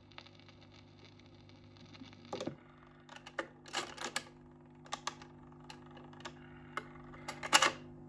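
Dansette Major record player's autochange mechanism clicking and clunking as the tone arm lifts off the record at the end of play and swings back to its rest, over a faint steady motor hum. The clicks come in scattered groups, with the loudest clunk near the end.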